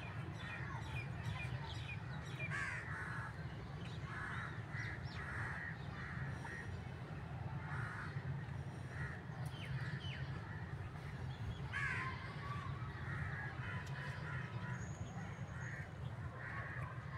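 Birds calling on and off, short harsh calls with a couple of sweeping, swooping ones, over a steady low hum.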